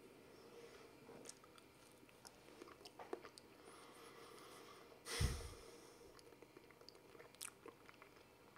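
Faint chewing of a banana, with small wet mouth clicks. About five seconds in comes a single louder, dull thump.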